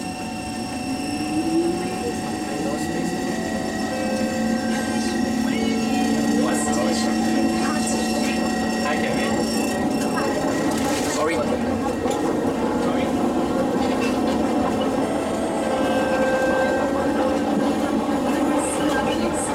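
SMRT C151 train running, heard from inside the passenger car: a continuous ride noise with a whine that rises about a second in, then holds steady for several seconds.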